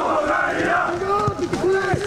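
Several voices shouting and calling over one another, players and a small crowd at a minifootball match, with a single thump near the end.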